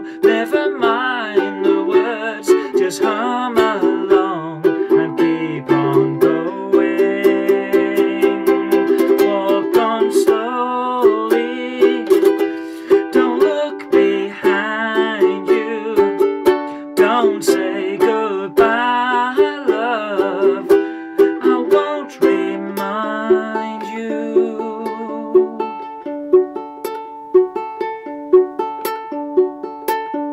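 Kiwaya ukulele played solo in an instrumental passage: busy, ornamented picked notes for most of it, settling into a steady repeating picked pattern for roughly the last seven seconds.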